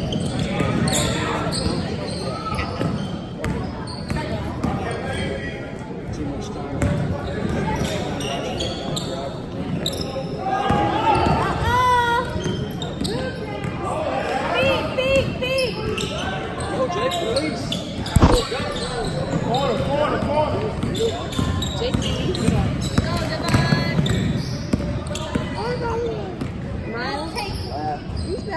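Basketballs bouncing on a hardwood gym floor during a game, with spectators' voices and shouts throughout, all echoing in a large gymnasium. A single loud knock stands out about 18 seconds in.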